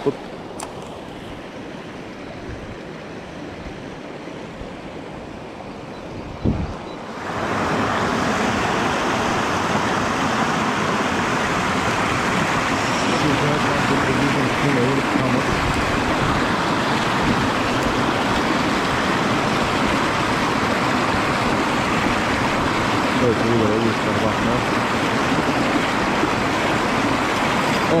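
A rocky mountain river running over stones. The flow is quieter at first, with a thump about six and a half seconds in. Then comes a loud, steady rush of whitewater from a small rapid close by.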